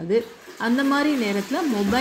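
A woman speaking, her voice drawn out in long sliding vowels like a hesitation, over a steady background hiss.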